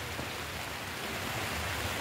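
Steady rain falling on the garden, an even hiss with no distinct drops standing out.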